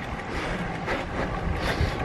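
Wind buffeting the camera microphone while riding: a steady rush with gusty low rumbling.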